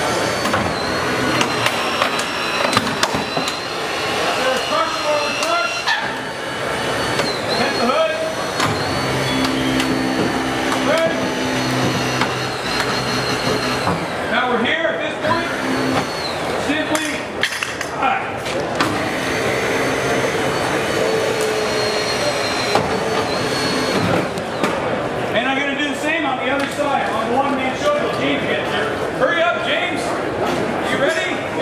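A battery-powered hydraulic rescue tool's motor runs in long stretches, a steady high whine with a lower hum underneath, broken by knocks and clicks as the tool works on the car's hood. A crowd murmurs in the background.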